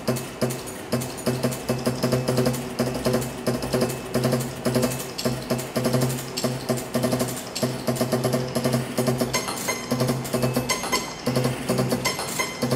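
A mechanical piano automaton playing an upright piano: motor-driven beaters strike the strings in fast repeating patterns, with a low piano note ringing under a dense clatter of clicks from the mechanism. Near the end, higher ringing metallic notes join in.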